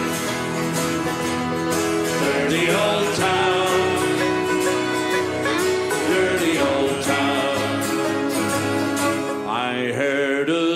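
Irish folk band playing live: several strummed acoustic guitars with a melody line carried over them, steady throughout.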